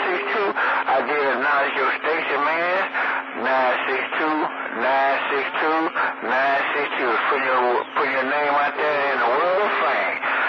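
Continuous talk received over a CB radio on channel 28 from a distant skip station, thin and band-limited, with a steady low hum underneath.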